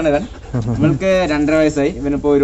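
A man talking, with short pauses between phrases.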